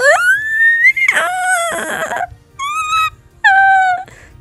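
A high-pitched whimpering voice. It makes one whine that rises for about a second, then three shorter whimpers, the last two clipped and level in pitch. Faint background music runs underneath.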